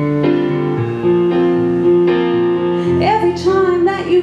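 Keyboard playing held chords, with the bass note changing underneath. A woman's singing voice comes in about three seconds in.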